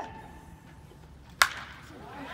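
A baseball bat striking a pitched ball: one sharp crack about a second and a half in, with a short ringing tail.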